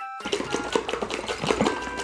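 Water sloshing and splashing inside a capped plastic tube shaken hard by hand, in rapid even strokes of about six a second, starting about a quarter second in. The shaking forces water out around the lid.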